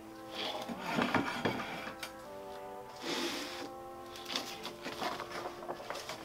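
Background music of soft held notes that change pitch a few times, with brief rustling as a fabric potting mat is handled.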